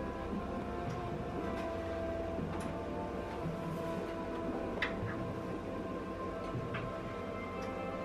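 Soft background music with sustained notes, with two faint clicks about a third and two thirds of the way in.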